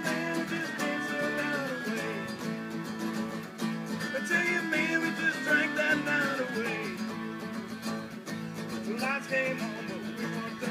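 Acoustic string band playing an instrumental passage: strummed acoustic guitars under a melodica lead line, with sliding notes from a guitar played flat across the lap.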